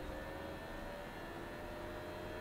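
Flashforge Dreamer 3D printer just powered on, its fans running with a low, steady hum of a few held tones.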